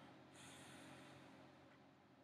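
Near silence with one soft breath, likely through the nose, close to the microphone, lasting about a second near the start. A faint steady room hum lies under it.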